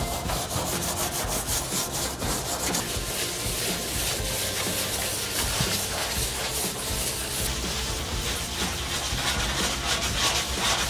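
Sandpaper on a wooden block rubbed back and forth by hand over a painted steel cabinet panel: a continuous scratchy rubbing of repeated strokes. The glossy paint is being scuffed to take the shine off so new paint will stick.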